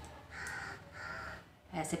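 A bird calling twice outdoors, two short calls of about half a second each, one after the other in the first second and a half.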